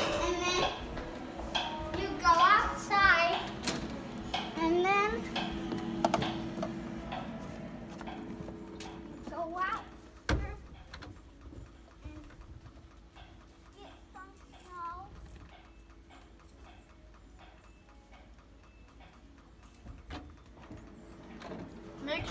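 A young child's voice calling out without clear words over a steady low hum. A single sharp thump comes about ten seconds in, and after it the sound is much quieter, with faint small knocks and brief voice sounds.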